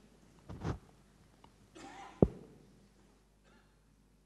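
Quiet pause with faint room tone, broken by a brief soft rustle about half a second in, another short rustle near two seconds in, and one sharp knock just after it: small handling noises at a table with a microphone.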